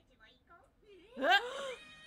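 A woman's excited gasp, a short high-pitched voiced cry that rises and then falls in pitch, about a second in, after faint low sound.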